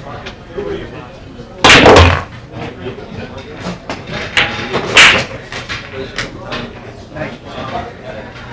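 Pool shot: a loud crack of the cue and balls about two seconds in, then more sharp clacks of pool balls, with a loud one about five seconds in.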